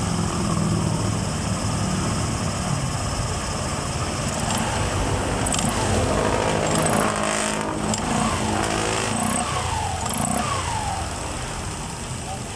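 Automatic scooter engine running with its CVT cover off, the freshly cleaned belt drive spinning in the open. The revs rise and fall a few times in the second half as the clutch engages and the rear wheel turns. The drive runs smoothly, with no sign of dragging.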